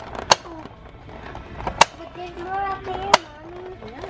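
Three sharp clicks from handling a blister-packed plastic toy, and from about two seconds in a wavering, held voice-like tone lasting about a second and a half.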